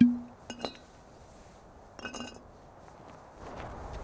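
A glass jug set down on a stone block with a knock and a short ring, followed by small glass clinks twice, about half a second and two seconds in. A steady rushing noise comes up near the end.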